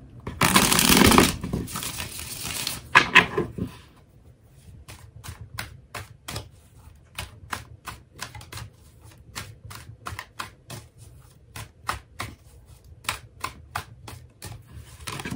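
A tarot deck riffle-shuffled: a loud dense burr of cards riffling together about half a second in, a short flutter as the deck is bridged back together, then a long run of light crisp card clicks, about three a second, as the cards are shuffled hand to hand.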